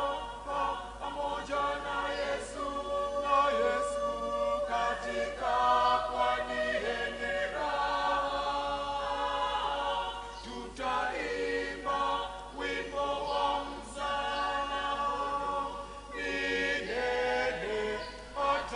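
Mixed church choir of women's and men's voices singing a hymn in Swahili, several voices together in harmony.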